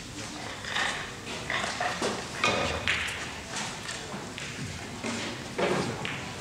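Large-hall ambience of a billiards tournament: background chatter with intermittent sharp clicks of carom balls striking on neighbouring tables, echoing in the hall.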